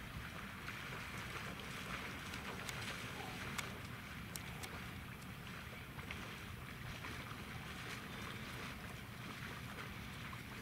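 A person in waders and a dog wading through shallow pond water: a continuous splashing and sloshing of water, with a low wind rumble on the microphone.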